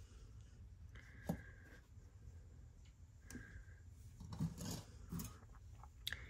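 Quiet handling of a small metal brooch: a single sharp click a little over a second in, then faint rubbing and light ticks of metal jewelry pieces near the end.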